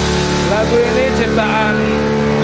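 A band's amplified instruments holding a sustained droning chord as a song rings out, with a person starting to talk over it about half a second in.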